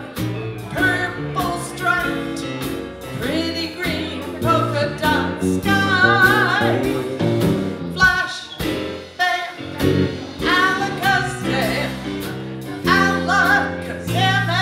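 A woman singing with a live band of keyboard, drum kit and electric bass, her held notes wavering with vibrato over a steady bass line.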